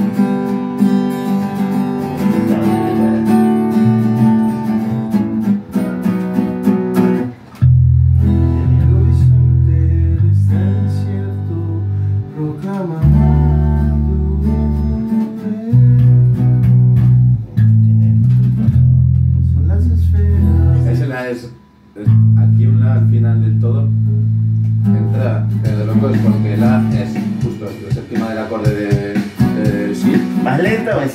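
Band rehearsal without drums: guitars playing chords, then from about a quarter of the way in an electric bass joins with long held low notes, one after another with short breaks, under the guitars. A voice comes in near the end.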